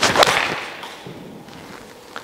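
A golf club swishes through the downswing and strikes the ball with a sharp crack about a quarter second in. The sound then fades away.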